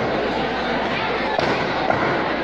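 Two sharp cracks about half a second apart near the end, from a drill team's rifle and stamping moves during a fancy drill routine, over steady crowd chatter.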